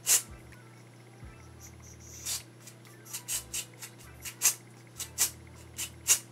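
Aerosol can of Jerome Russell temporary hair colour spray hissing in about ten short sprays onto a section of hair: one at the very start, then the rest from about two seconds in.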